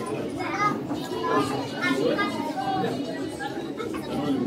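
Children's voices talking and chattering, several overlapping, with no pause.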